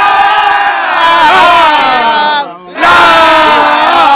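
A group of men chanting loudly together in long held notes, breaking off briefly about two and a half seconds in and then taking up the chant again.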